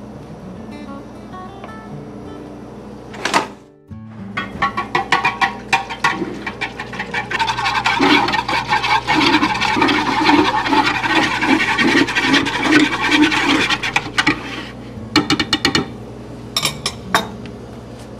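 Wire whisk clattering rapidly against a glass bowl, whisking a liquid red-wine sauce with flour, over background music. The whisking starts a few seconds in and thins out near the end.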